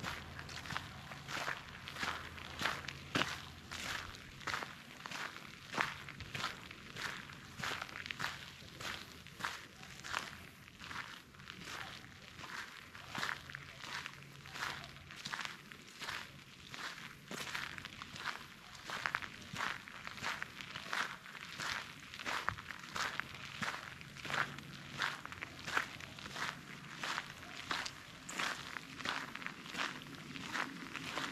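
Footsteps crunching on a gravel path strewn with fallen leaves, at an even walking pace of about two steps a second.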